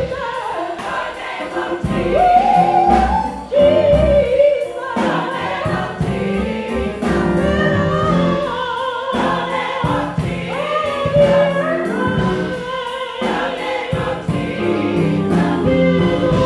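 Gospel choir singing, led by a female soloist on a microphone whose melody rides above the choir's chords, over a steady beat.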